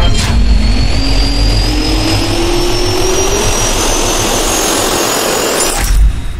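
Jet turbine spooling up, a sound effect: a steady rush with a whine that rises in pitch throughout, ending in a sharp hit.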